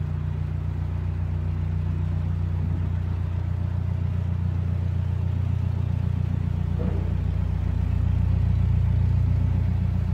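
Narrowboat's diesel engine running at low revs, a steady low throb whose note shifts a little about three seconds in and again near seven seconds as the throttle is changed, growing slightly louder toward the end.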